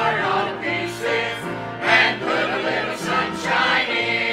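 Small mixed church choir of men and women singing a gospel hymn together in steady, sustained phrases.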